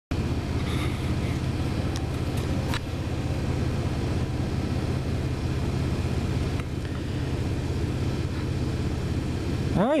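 A steady, low engine rumble, a diesel or car engine running at a constant idle-like pace with no change in pitch.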